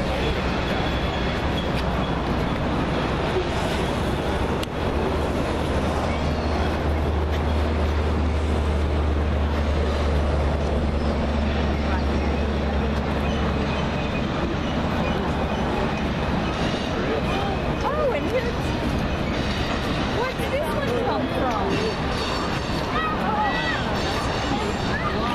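Low, steady diesel rumble of a freight train's locomotives working through the valley below, over constant outdoor background noise; the rumble is strongest in the first half. People's voices chatter in the second half.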